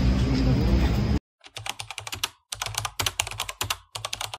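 Outdoor street background with a faint voice that cuts off abruptly about a second in. This is followed by quick runs of computer-keyboard typing clicks with short pauses, a typing sound effect for text being typed onto a title card.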